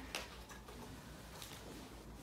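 A few faint, light clicks and taps over quiet room tone: handling noise from sheet music and string instruments being readied in a small rehearsal room.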